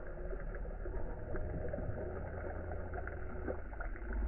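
Slowed-down, pitched-down lake-shore ambience: a steady low rumble of wind and water at a camera just above the surface, with a few faint clicks and small splashes.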